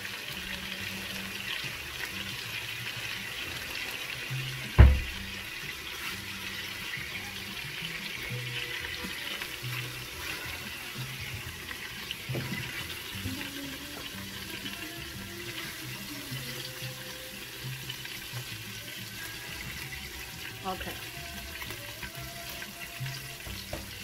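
Chicken and oil sizzling steadily in the hot stainless steel inner pot of an Instant Pot on sauté, with one sharp knock about five seconds in.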